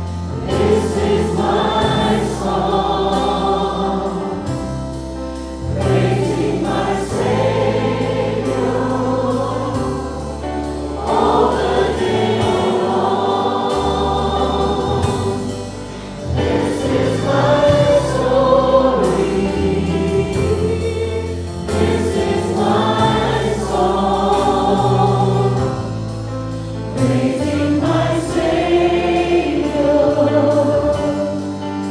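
A congregation singing a worship song together with a live worship band. The voices come in phrases over long sustained bass notes, with a short dip in loudness between phrases.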